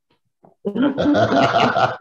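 A person laughing, starting a little over half a second in.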